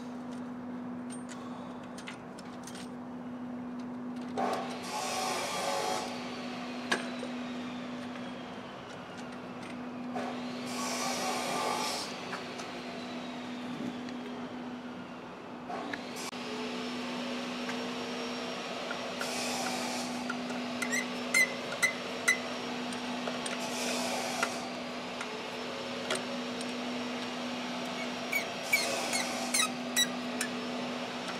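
Hand work on a car's throttle body: several short scraping bursts of a second or two and a few sharp clicks, over a steady low hum.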